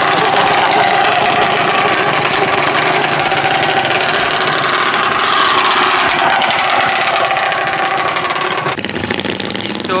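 Several small motorcycles riding past one after another in a convoy, their engines running steadily, with voices mixed in. The sound drops a little near the end.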